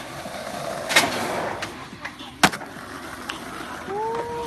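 Skateboard wheels rolling on asphalt, with two sharp clacks of the board hitting the ground, about a second in and again about a second and a half later.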